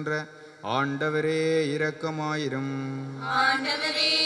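A priest chanting a prayer into a microphone: one man's voice holding long notes on a near-level pitch after a brief pause about half a second in, with a fuller, brighter vocal sound coming in near the end.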